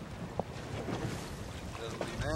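Wind buffeting the microphone over a low rumble of boat and water noise on an open boat, with a faint tick about halfway through.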